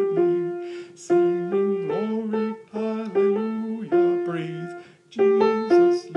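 Piano picking out a choir part of a spiritual anthem note by note for rehearsal. Each note starts sharply and fades while held, mostly with a lower note sounding under it, and there is a short gap about five seconds in.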